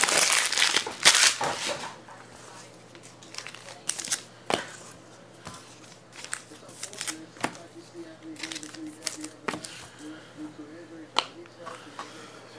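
Trading cards and their plastic sleeves and wrappers being handled: a loud spell of plastic crinkling and rustling in the first two seconds, then scattered light clicks and rustles.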